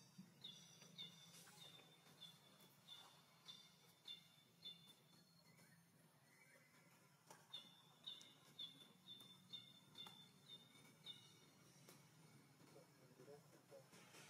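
Faint bird calls: a short, high, slightly down-slurred note repeated about twice a second, in two runs of several seconds each with a pause between, over a low steady hum.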